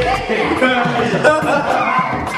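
Men's voices talking.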